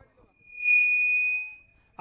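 Public-address microphone feedback: a single high whistling tone that swells within half a second, holds, then fades away over about a second.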